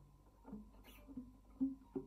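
Classical guitar played fingerstyle: single plucked notes about every half second, each dying away quickly. A brief high scratchy noise comes just before the middle.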